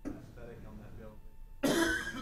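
Faint speech in a large room, then a loud cough near the end.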